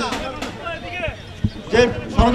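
A man speaking loudly into a handheld microphone. His phrase trails off into a short pause, broken by a dull thump about one and a half seconds in, and he starts speaking again near the end.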